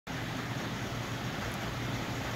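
Steady background room noise in a workshop: an even hiss with a constant low hum, and no distinct events.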